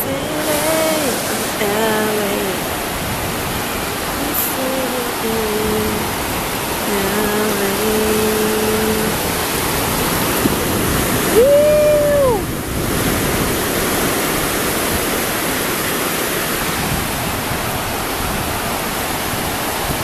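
Ocean surf breaking and washing up the sand, a steady rushing hiss, with wind on the microphone. A woman's voice hums a few held notes in the first half and sings one long rising-and-falling note about twelve seconds in.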